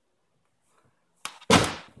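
A light click, then a single loud thud about a second and a half in that dies away quickly.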